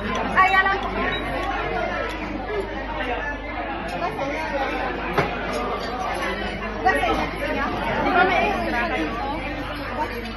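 Indistinct chatter of several people talking at once, voices overlapping without a break.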